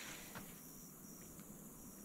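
Faint, steady high-pitched chorus of insects.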